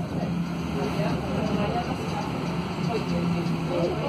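Cabin sound inside a Mercedes-Benz OC500LE city bus moving in traffic: its OM936 six-cylinder diesel runs with a steady low hum, and passengers talk over it.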